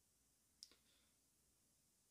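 Near silence: room tone, with one faint short click a little over half a second in.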